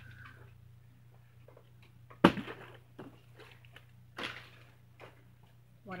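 A thrown object landing with one sharp knock about two seconds in, followed by a few softer taps and rustles, over a low steady hum.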